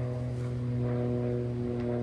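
A steady low mechanical hum at one unchanging pitch, with no other clear event.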